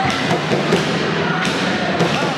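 Sports-hall din of an indoor handball match: a mix of voices from players and spectators echoing in the large hall, with thuds from the court and one sharp knock about one and a half seconds in.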